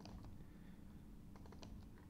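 Faint computer keyboard keystrokes: a few clicks at the start and a few more about one and a half seconds in.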